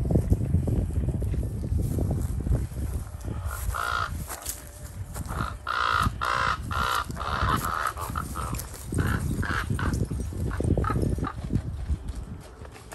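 Common ravens calling again and again in short, harsh calls, in bunches from a few seconds in until near the end: the ravens mobbing a great horned owl. A low rumble on the microphone runs underneath.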